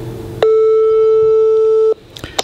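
Telephone ringback tone: one steady single-pitch tone, about a second and a half long, that starts sharply and cuts off cleanly as an outgoing call rings at the other end.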